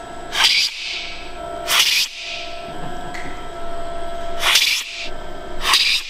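Coffee being slurped hard off a cupping spoon so it sprays across the palate, as in a coffee cupping: four short, loud slurps, two in the first two seconds and two more near the end.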